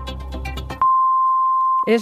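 Radio time signal marking the top of the hour: the long final pip, a single steady high beep lasting about a second, comes in as a music bed fades out. A voice starts the hour announcement right after it, near the end.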